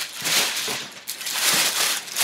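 White tissue paper and a glossy paper shopping bag rustling and crinkling as the bag is pulled out of a cardboard box, swelling twice, about half a second in and again near the end.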